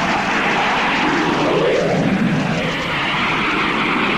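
Sustained whooshing sound effect for a blast of light, a steady rush of noise that wavers slowly in pitch.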